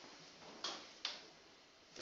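Two light, sharp clicks a little under half a second apart, over quiet room tone.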